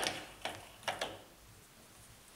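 A few short, sharp metallic clicks of a collet and workpiece being fitted into the spindle of a Schaublin 102 lathe: one about half a second in, then two close together near the one-second mark.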